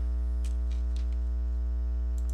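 Steady electrical mains hum with a strong low drone and a ladder of higher overtones, and a few faint clicks over it.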